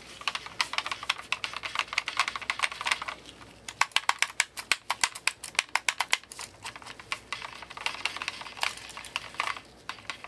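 Computer mouse buttons clicked quickly and repeatedly, a continuous run of sharp clicks that comes fastest and loudest between about four and six seconds in.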